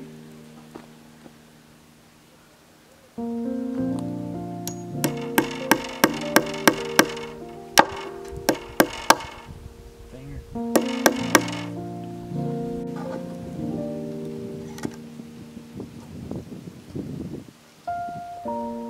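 Background music, over which come two runs of quick, sharp taps, about three a second: a hammer tapping small nails into a wooden arbor post.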